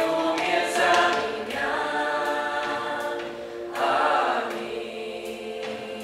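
Mixed youth choir of men's and women's voices singing a Christian song together, holding long notes, with a louder phrase about four seconds in.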